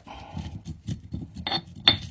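Black granite pestle grinding and scraping salt and peppercorns around the inside of a black granite mortar: a run of gritty scrapes and small clicks, with two sharper clicks about a second and a half in. This is the salt-and-pepper grind used to season a new granite mortar.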